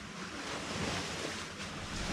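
Small lake waves washing in on the shore, heard as a steady, even rush of water.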